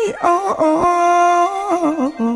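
A singer vocalising 'oh, oh' in a Thai rock ballad: one long held note, sliding in pitch as it begins and again near the end.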